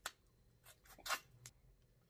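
A few faint, short wet clicks and smacks of someone eating neck bones by hand, sucking and picking meat off the bone. The loudest comes about a second in.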